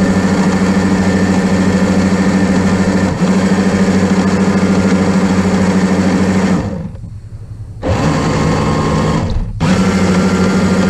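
Small electric motor and propeller of a toy remote-control boat running with a steady, pitched whine, heard close up from a camera on the hull. The motor cuts out for about a second roughly two-thirds of the way through, starts again, and dips briefly near the end.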